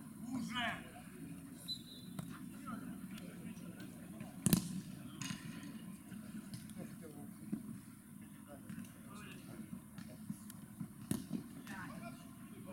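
Football being kicked during play, giving a few sharp thuds, the loudest about four and a half seconds in, with short calls from players.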